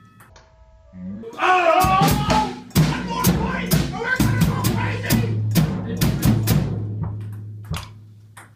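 Drum kit being played: a quick run of drum and cymbal strikes that starts about three seconds in and dies away near the end.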